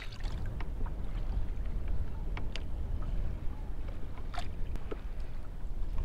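Wind rumbling on the microphone of a sea kayak, over water moving against the plastic hull. A few faint, short clicks and taps come at scattered moments, from bait and tackle being handled.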